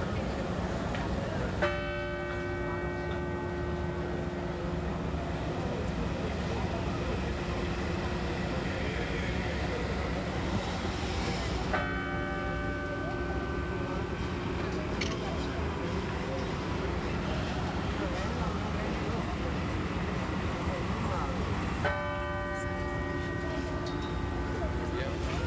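Church bell tolling slowly: three single strikes about ten seconds apart, each ringing on and fading, a funeral toll.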